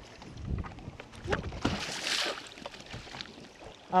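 Small waves lapping and slapping against a fishing boat's hull, with scattered light knocks and a brief splashing hiss about two seconds in.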